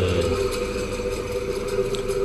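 KDK ceiling-fan motor switched on in a bench test after repair, running with a steady electrical hum and a faint light ticking.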